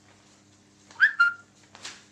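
Two short, high-pitched chirps about a second in, the second held a little longer at one pitch, followed by a brief rustle of sheet music being handled.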